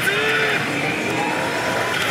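Steady, dense din of a pachinko parlor: pachislot machines' music and electronic sound effects, with the Oshi! Banchou 3 machine's own battle-scene sounds in front.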